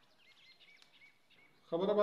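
Faint high chirps, like small birds calling in the background of a quiet room, then a man's voice starts loudly near the end.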